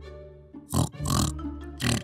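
Background music with two short pig snorts about a second apart, cartoon oink sound effects.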